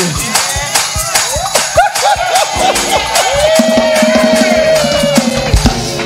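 Lively church praise music with the congregation clapping along in a steady quick rhythm and voices calling out and singing, and a long held note through the second half.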